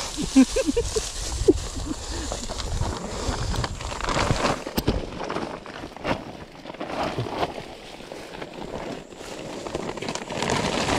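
Woven plastic sack rustling as it is shaken open and handled among leafy undergrowth, in irregular bursts, with a few brief voice sounds in the first second or so.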